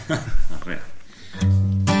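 A few seconds of talk and laughter, then about a second and a half in a guitar starts strumming chords, the opening of a live song.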